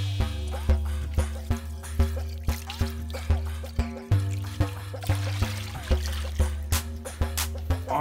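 Background music with a steady beat and a held bass line. Water pouring from a jug into a gravel-lined wading pool trickles faintly beneath it.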